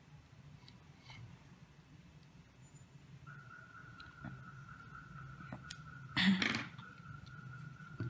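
Faint handling of a small metal robot chassis and a small screwdriver driving the screw that holds a plastic wheel onto a BO gear motor shaft, with light clicks. A short louder scrape or knock comes about six seconds in, and a faint steady whine sets in about three seconds in.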